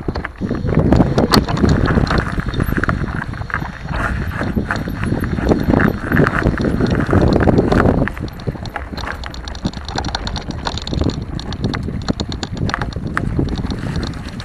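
Mountain bike rolling over a rough, rocky dirt trail, heard through a camera mounted on the bike: a dense, irregular rattle of knocks from the frame and wheels over a low wind rumble. It is loudest in the first half and eases a little about eight seconds in.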